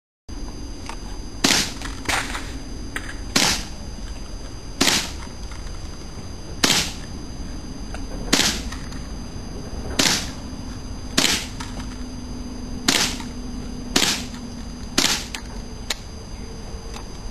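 Rifle shots fired one at a time at a steady pace, about ten in all, one every one and a half to two seconds, each a short sharp report. A fainter click follows some of the shots.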